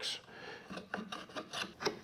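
Small hand plane shaving the end of a wooden tenon in several short, quiet strokes, cleaning off saw marks.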